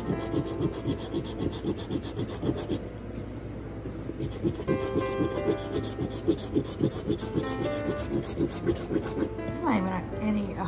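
A coin scraping the coating off a scratch-off lottery ticket in quick, repeated strokes, easing off briefly about three seconds in.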